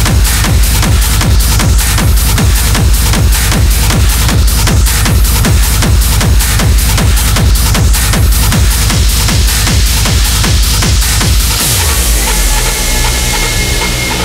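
Hard techno DJ set: a fast four-on-the-floor kick drum, each kick dropping in pitch, under a dense electronic texture. Near the end the kick drops out and a held droning chord takes over, a breakdown.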